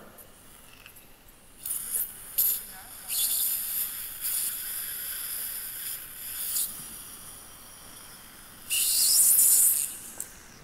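Water-cooled surgical drill handpiece cutting an implant site, running in intermittent high-pitched runs, with the hiss of a surgical suction tube. The loudest burst comes near the end.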